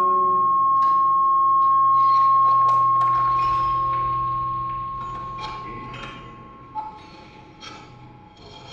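Contemporary chamber music for electric guitar, cello and electronics: a held high tone that slowly fades over the first six seconds above low sustained notes, with scattered clicks and short noisy strokes, the whole dying away toward the end.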